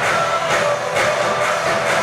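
Live band playing an upbeat song through the concert PA, with drums keeping a steady beat of about two hits a second under keyboard and guitar.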